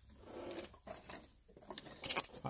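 Faint rustling and light handling noises as foam packing pieces are cleared away from around a sealed trading-card box.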